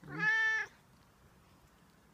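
An orange-and-white domestic cat meowing once: a short call of under a second that opens low and rises into a clear held note.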